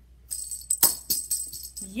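A plastic-spoon catapult snaps as it fires, with one sharp click a little under a second in. A small pink plastic ball with a bell inside jingles brightly as it is launched and lands.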